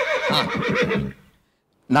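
A loud, high-pitched, quavering whinny that falls in pitch and stops about a second in.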